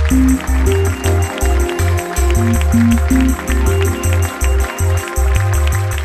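Upbeat background music with a steady beat and a pulsing bass line.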